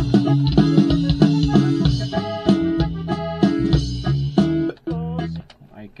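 Playback of a norteño arrangement built from drum loops, with bajo sexto and bass over the drums and a drum fill (remate) placed in the middle of the phrase. It starts abruptly and stops about five and a half seconds in.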